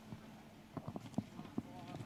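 A few faint, irregular knocks and taps, as of footsteps and furniture moving at a seated gathering, over faint distant voices.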